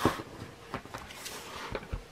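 A spiral-bound paper planner being handled and turned on a desk: a sharp knock as it is grabbed, a brief rustling slide of the pages and cover across the surface, and a few softer bumps as it is set down.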